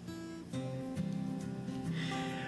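Background music played on guitar, a run of plucked notes changing about every half second.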